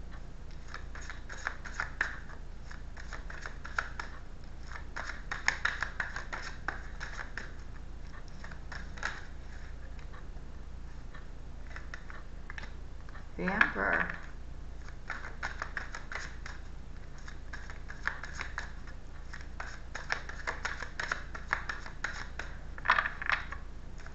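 A deck of tarot cards being shuffled and handled by hand: soft, irregular flicking and clicking of the cards, with a brief vocal sound about halfway through.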